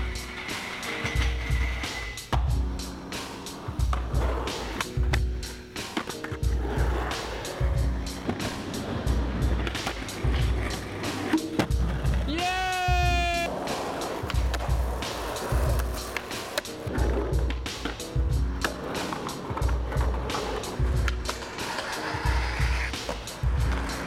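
Skateboard on concrete and a metal rail: wheels rolling, tail pops and board landings, heard as repeated sharp clacks. Under it runs background music with a steady beat, and a brief pitched sweep comes about halfway through.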